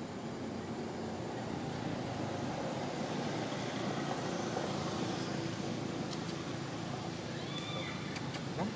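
A motor engine running steadily in the background, swelling a little mid-way, with a few short high chirps near the end.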